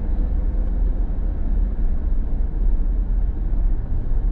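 Steady low engine and road rumble heard inside the cabin of a car or pickup driving slowly.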